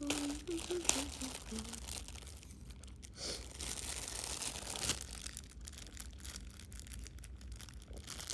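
Clear plastic bread bag crinkling and rustling as it is handled and opened, with irregular crackles, busiest in the middle. A few hummed notes are heard at the start.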